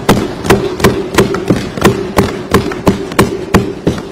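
Assembly members thumping their desks in approval: a steady beat of about three loud thumps a second, the customary applause in an Indian legislature.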